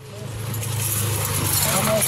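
Kawasaki Teryx 800 side-by-side's V-twin engine running at low speed with a steady hum, while branches and leaves brush and scrape along the body in a rising hiss.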